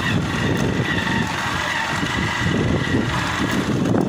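Motorcycle engine running at riding speed, with steady road noise from the tyres on a rough dirt road.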